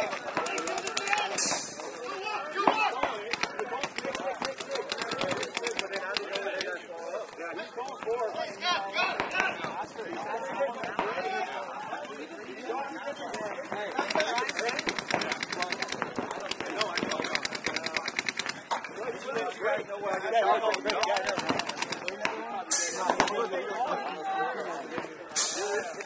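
Rapid paintball marker fire from many guns across the field, sharp pops coming in fast continuous strings, with voices calling out over it.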